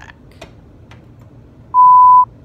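A loud, steady electronic beep at a single pitch, about half a second long, starting near the end. Before it come two faint clicks.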